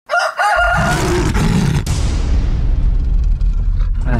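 Intro sound effects: a short rooster-like crow in the first second, then a loud, deep rumble with a hiss that slowly fades out.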